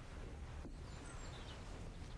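Outdoor ambience: a steady background hiss with a few faint bird chirps about a second in.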